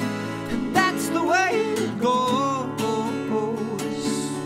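Acoustic guitar strumming chords in a live acoustic rendition of an indie-rock song, with a sung vocal melody gliding over it from about a second in.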